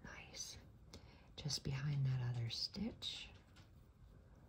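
A woman whispering and murmuring softly to herself, with a short held hum about halfway through.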